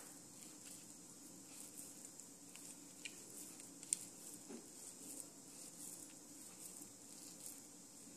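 Near silence with faint crackling of hands pressing a crumbly rava laddoo mixture of semolina, sugar and coconut into a ball, and one light click about four seconds in.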